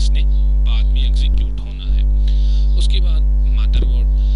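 Loud, steady electrical mains hum: a low buzz with a ladder of its overtones, dipping briefly about halfway through.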